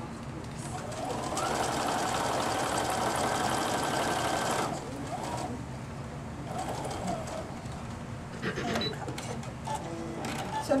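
Sewing machine with a pintuck foot running a straight stitch for about three and a half seconds, sewing a narrow fabric strip around cording to make tiny piping, then stopping.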